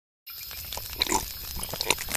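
A man's snorting, spluttering mouth noises over a crackling campfire, with a few sharp crackles scattered through.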